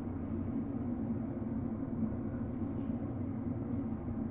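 Steady low rumbling background noise, even throughout, with no distinct events.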